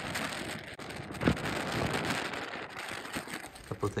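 Wind driving snow across open ground: a steady hiss, with one brief knock about a second in.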